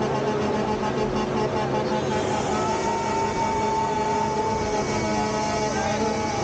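Semi trucks running, with long steady horn tones held over the engine noise.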